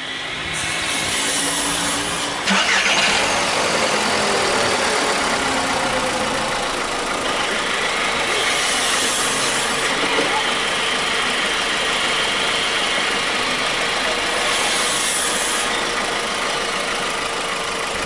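Four-cylinder petrol car engine started after a throttle body cleaning: it catches about two and a half seconds in, then runs steadily at idle with the air intake off the throttle body, a steady hiss over the engine note.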